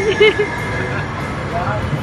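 Electric city trams passing close by at a stop: a steady low rumble of the tram running along the rails. A person's voice is heard briefly at the start.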